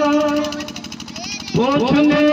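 A man's voice singing religious verse through a microphone: a long held note fades out about half a second in, then a new phrase begins about a second and a half in, sliding up in pitch.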